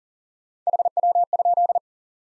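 Morse code sine tone at 40 words per minute, keyed in short dits and longer dahs for about a second, repeating the QSO element "how copy".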